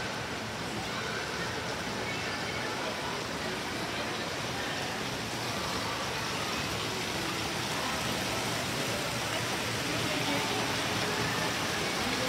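Steady background hubbub of a large airport terminal hall: faint distant voices over an even rushing noise.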